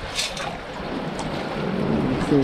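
Seawater splashing and streaming out through the holes of a perforated metal sand scoop as it is lifted out of shallow sea water, with a short splash just after the start.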